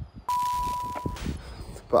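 Glitch transition sound effect: a sudden burst of static hiss with a steady high beep, starting about a quarter second in, the beep cutting off after about a second while the static fades.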